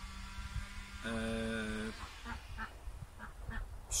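A man's drawn-out, flat-pitched hesitation sound, "eee", held for just under a second about a second in, a filled pause in his speech.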